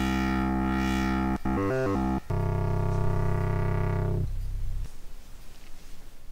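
Patchblocks mini-synthesizer playing a buzzy fader-drawn waveform while its low-pass filter knob is turned: a held note, a few quick short notes, then a longer held note that cuts off about four seconds in, leaving a faint tail.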